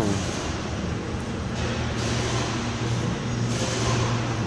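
A steady low mechanical hum, with two short bursts of scraping and rustling about halfway through and near the end as the oil filter is turned by hand.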